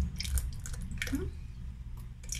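Coconut milk poured from a carton into a glass, with small splashes and light clicks.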